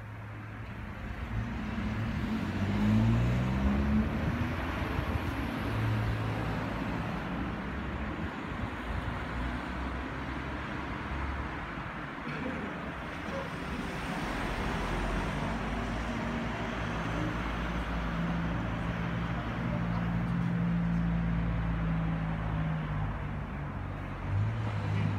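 Road traffic: a continuous wash of traffic noise with a vehicle engine rising in pitch about two seconds in, and a steady engine hum later on.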